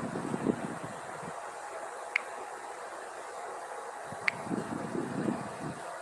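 Steady background noise with soft rustling near the start and again near the end, and two short sharp clicks about two seconds apart.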